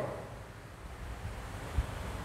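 Faint room noise, a low rumble with light hiss, in a pause in speech; one short soft thump near the end.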